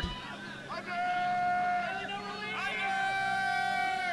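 Long held shouts from ultimate players on the field and sideline: one cry lasting about a second, starting about a second in, then a longer one from the middle onward, over a low steady hum.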